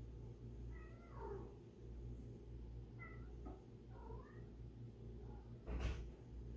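A cat meowing three times, short high calls, the first sliding down in pitch. A sharp knock sounds just before the end.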